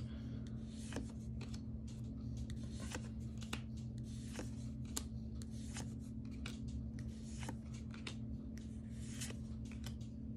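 Magic: The Gathering cards being handled and flipped in the hand, one card slid from the front of the stack to the back, with a light flick or snap of card stock about every half second to second. A steady low hum runs underneath.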